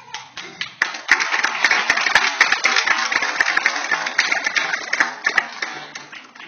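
Audience applauding, building about a second in and dying away near the end.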